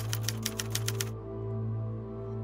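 Typewriter key clicks in a quick, even run that stops about a second in, over a sustained low chord of background music.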